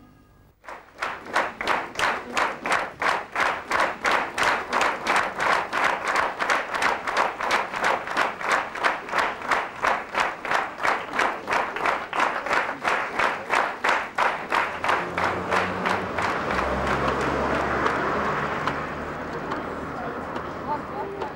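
Large theatre audience clapping in unison, a steady rhythmic applause of about three claps a second, which loosens into ordinary scattered applause near the end.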